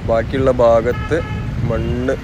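A person talking over a steady rumble of street traffic, with a brief steady tone about a second in.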